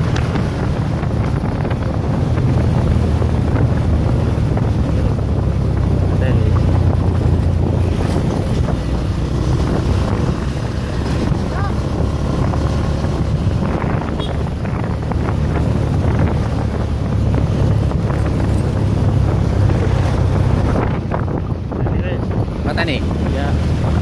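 Wind buffeting the microphone on a moving motorcycle, a steady deep rush with the bike's road and engine noise underneath.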